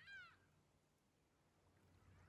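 Near silence, broken at the very start by one short, faint bird call that falls in pitch.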